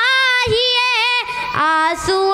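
A boy singing a naat solo into a microphone, drawing out long held notes with wavering vocal ornaments.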